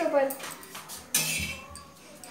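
Kitchen clatter: a few light knocks and clinks of utensils on a kitchen counter, with one louder knock a little after a second in.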